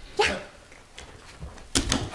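Small dog giving a single short bark just after the start, then a quick cluster of knocks near the end.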